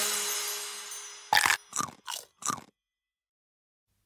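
The end of a children's song fading out, then four short cartoon sound effects in quick succession, followed by silence.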